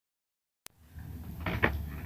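Dead digital silence, broken about two-thirds of a second in by a single sharp click where edited audio segments join. A faint low hum of room tone follows, with a couple of short soft sounds near the end.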